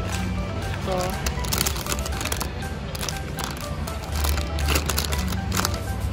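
Background music with a steady bass line, with one short spoken word near the start.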